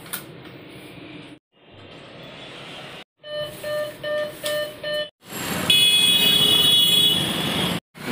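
ATM keypad beeping, about five short electronic beeps in quick succession, one for each key pressed. Then, after a cut, a louder stretch of outdoor noise with steady high-pitched tones.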